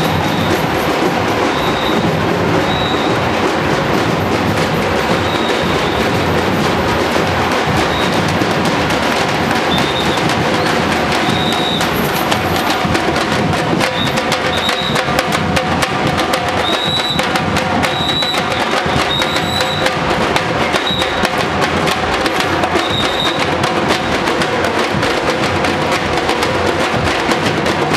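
Carnival street percussion band playing a steady, driving drum rhythm, with short high-pitched notes sounding over it every second or two.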